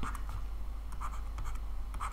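Stylus writing on a tablet screen: faint, scratchy strokes with small taps, over a steady low hum.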